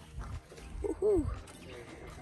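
A short wordless vocal sound from a person, rising and then falling in pitch, about a second in, over a low rumble.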